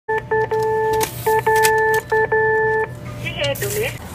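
Electronic beeps from a Japanese cash machine's keypad as keys are pressed: about eight beeps in three groups, each group ending in a longer tone of about half a second, with faint key clicks. A brief voice comes near the end.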